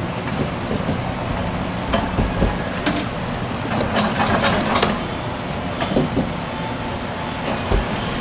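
Steady arcade din with scattered clicks and knocks and a couple of low thuds, as a claw machine's claw is moved over the prizes.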